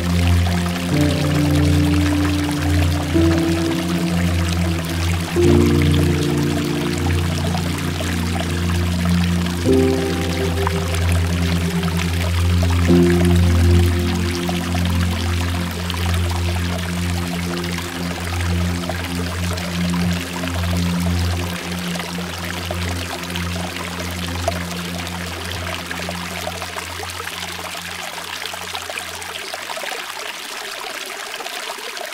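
Slow ambient music of sustained chords that change every few seconds, over a steady rush of water falling and dripping from a mossy rock face. The music fades out over the second half, leaving the water.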